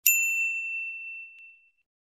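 A single bell-like 'ding' sound effect, struck once and ringing out clearly, fading away over about a second and a half.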